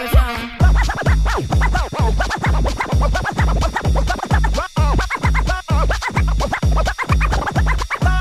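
DJ scratching a record on a Technics turntable with Serato control vinyl: fast back-and-forth sweeps rising and falling in pitch over a hip-hop beat with heavy, even bass hits. The previous track cuts out about half a second in.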